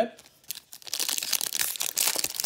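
Foil wrapper of a trading-card pack crinkling and tearing as it is opened by hand. It makes a dense crackle that starts about half a second in.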